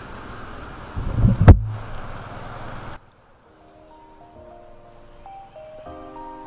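Honda XRM125 FI motorcycle riding noise, engine and wind on the microphone, with one loud low burst about a second and a half in. Halfway through it cuts off suddenly and soft background music with held keyboard-like notes takes over.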